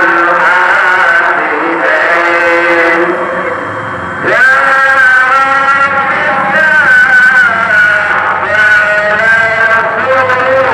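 Male voice chanting the tarhim, the Islamic pre-dawn chant, in long, ornamented held notes that bend up and down. The voice eases off about three seconds in and returns with an upward slide about a second later.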